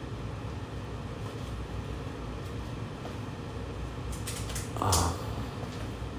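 Room tone: a steady low background hum, with one short vocal sound such as a hum or breath just before five seconds in.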